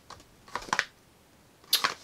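A few light clicks and taps from handling cosmetic product packaging, about half a second in and again near the end.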